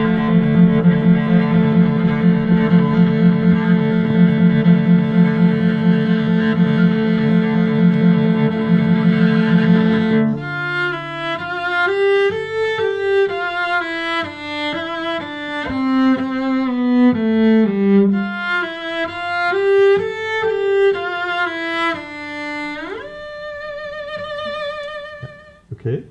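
Solo cello bowed: for about ten seconds, low notes repeated in quick even bow strokes, then a melody that slides smoothly up and down between notes, ending with a rising glide to a high note held with vibrato.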